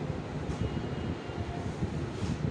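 A whiteboard duster wiping marker off a whiteboard, with faint swishes about half a second in and again near the end, over a steady low rumble.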